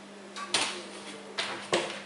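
An owl beating its wings in a few short bursts of flapping, about three, while it stays perched on a hand instead of flying off.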